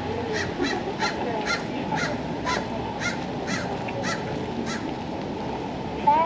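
A bird calling over and over, about ten short calls at roughly two a second, stopping a little before the end, over steady street background noise.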